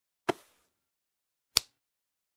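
Two short, sharp cartoon sound effects about a second and a half apart, the second higher-pitched. Each cuts off suddenly into dead silence.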